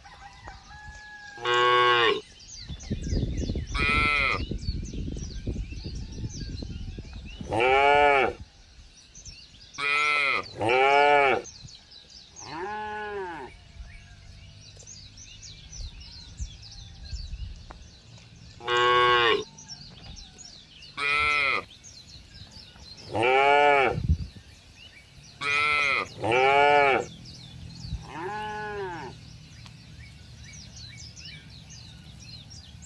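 Cattle mooing repeatedly: about a dozen short moos that rise and fall in pitch, some coming in quick pairs.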